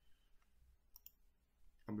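A single sharp computer mouse click about a second in, against quiet room tone.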